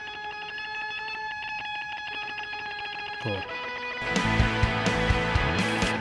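A rock song playing back from a multitrack mix. Held, ringing pitched notes sustain for about three seconds, then the full band with drums comes in about four seconds in.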